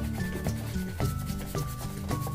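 Hog-bristle brush rubbing lightly over the leather of a baseball glove, buffing it to a shine after glove lotion, heard over background music whose melody steps downward note by note.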